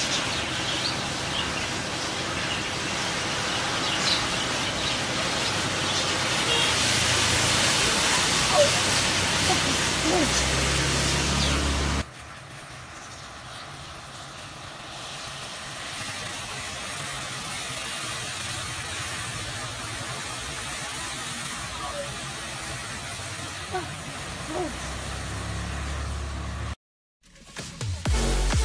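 A mass of matchstick heads flaring and burning, a loud hiss that builds over the first ten seconds. About twelve seconds in it drops suddenly to a quieter, steady burning noise.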